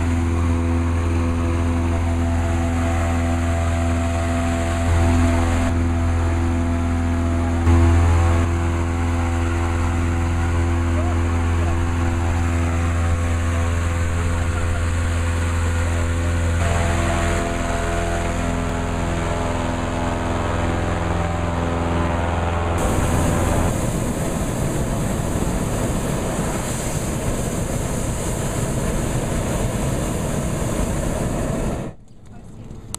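A hot-air balloon's petrol-engined inflator fan runs steadily, blowing cold air into the envelope. About three-quarters of the way through, the propane burner takes over with a steady rushing noise as it fires hot air into the envelope.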